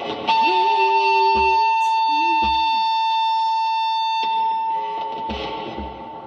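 Live improvised band music. A loud, steady high tone is held from just after the start and cuts off suddenly about four seconds in, over a lower wavering tone. A regular low kick-drum beat drops out and comes back about five seconds in.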